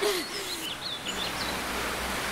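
Steady outdoor background hiss with a few short, high bird chirps about half a second in, and a faint low steady hum in the second half.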